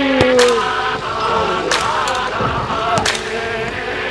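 Several sharp knocks of a football being kicked and hitting the goal area, with brief shouts from the players. A steady buzzing hum of several tones runs underneath throughout.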